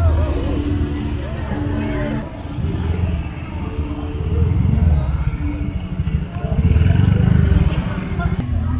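A small motorcycle engine running close by, its low rumble swelling twice and loudest near the end, with people's voices over it.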